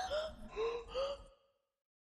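A man's voice trailing off in short, evenly spaced repeats that grow fainter, then dead silence from about two-thirds in.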